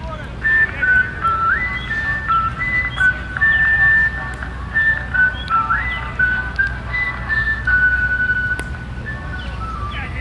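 A person whistling a simple tune in clear, high single notes, with quick upward slides into some notes, the same short phrase heard twice, over a steady low rumble.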